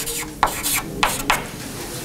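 Chalk scratching on a blackboard as symbols are written: a few short scratchy strokes in the first second and a half, then fainter.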